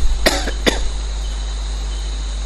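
A person coughs twice in quick succession, a short sharp cough about a quarter of a second in and a second about half a second later, over a steady low electrical hum.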